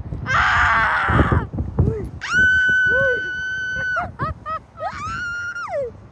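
Young girls screaming on a Slingshot reverse-bungee ride: a rough, breathy shriek at the start, then a long high-pitched scream held steady for nearly two seconds, and a second scream near the end that rises and then holds.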